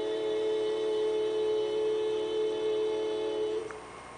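A long held chord of several steady tones from a cartoon soundtrack, sung out by a group of cartoon frogs, played through computer speakers and picked up by a camera; it stops about three and a half seconds in.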